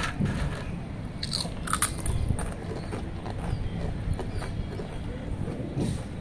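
Two children biting into and chewing crisp Lay's potato chips, an irregular run of sharp crunches throughout.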